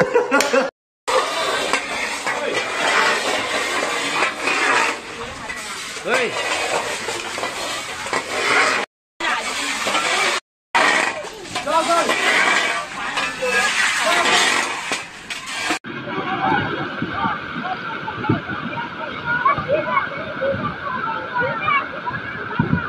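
Indistinct voices over a steady noisy background, broken by three brief dropouts to silence. About sixteen seconds in it gives way to a duller, more muffled sound.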